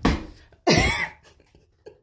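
A woman coughing twice in quick succession, the second cough about two-thirds of a second after the first, then a few faint ticks.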